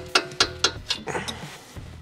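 Metal hand tool worked in a car's steel strut knuckle: a run of sharp metallic clicks, about four a second, through the first second, then a short rasp. Background music plays under it.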